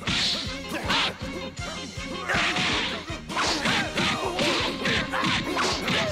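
Cartoon fight sound effects: a rapid run of swishing blows and punch impacts, about a dozen in a few seconds.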